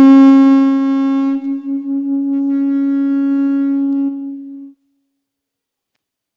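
Solo violin bowing one long, low held note, loudest at its start and wavering briefly about a second and a half in. The note fades and stops near the end.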